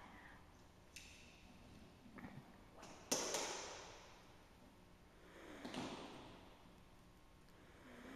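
Quiet handling of dog toys on a raised pet cot: a small click about a second in, a sharper knock about three seconds in that rings briefly in the bare hall, and a soft rustle near six seconds.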